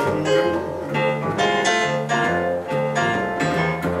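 Piano and upright double bass playing a short instrumental passage with no singing: struck piano notes and chords over plucked low bass notes.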